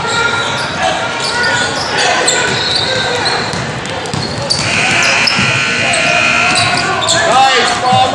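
Basketball bouncing on a hardwood gym floor during play, with spectators' voices echoing around a large hall.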